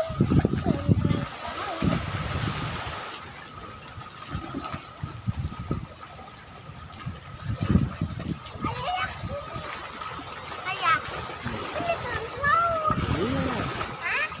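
Seawater splashing and lapping against concrete breakwater blocks, with a surge of splash noise a couple of seconds in. A child's voice calls out at the start and again several times in the second half.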